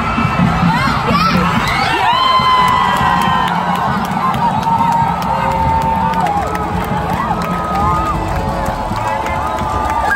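Football crowd cheering and yelling as a goal is scored, many voices holding long shouts over a steady crowd noise.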